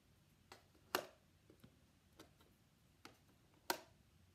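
Small letter tiles being picked up and set down on a metal baking tray: a series of light clicks and taps, about six in all, with the two sharpest about a second in and near the end.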